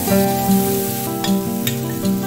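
Onions and tomatoes sizzling in oil in a nonstick frying pan as they are stirred with a wooden spatula, with a couple of sharp clicks of utensil on pan about halfway through. Background music with sustained plucked notes plays over it.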